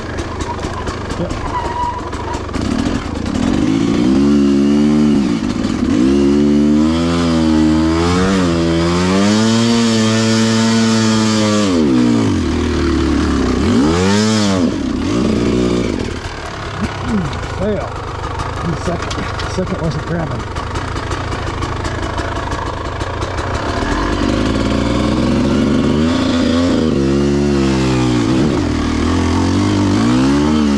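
Dirt bike engine revving up and down as it is ridden over a rocky trail and up a hill, its pitch rising and falling many times. The revs ease off for a while in the middle, then build again near the end.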